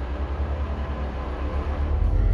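A low, steady rumble with a faint rapid pulse.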